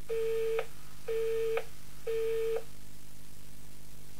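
Telephone busy tone: three steady beeps, each about half a second long and coming about once a second. It signals the call hanging up at the end of a recorded phone message.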